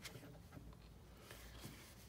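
Near silence, with faint scuffs of a fingertip rubbing a paper sticker down onto a planner page.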